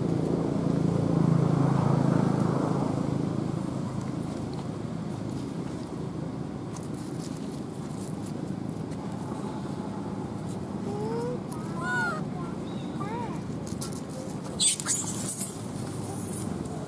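Macaques giving a few short, high, arching squeaks in quick succession about three-quarters of the way in, over a steady low background rumble. A few sharp crackles near the end.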